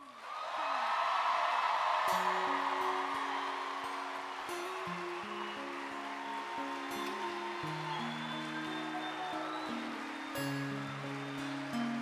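Audience applause and cheering that slowly fades. About two seconds in, a live band starts a slow instrumental intro of held notes stepping from chord to chord.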